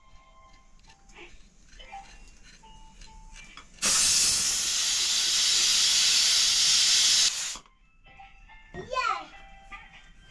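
Loud, steady hiss of escaping steam lasting about three and a half seconds, starting about four seconds in and cutting off abruptly.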